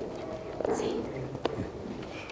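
Soft, low murmured speech, close to a whisper, with a small sharp click about one and a half seconds in.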